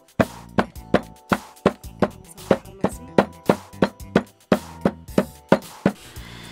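A hand-held stone pounding charqui (sun-dried beef) on a wooden board, about three sharp knocks a second, to tenderise and shred the meat instead of cutting it. Faint background music runs underneath.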